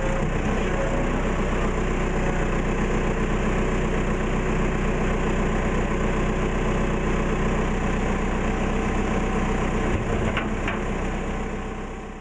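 Diesel engine of a backhoe loader running steadily as it digs, with two faint clicks about ten seconds in; the sound fades away near the end.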